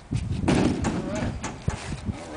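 Indistinct voices, with a short sharp knock near the end.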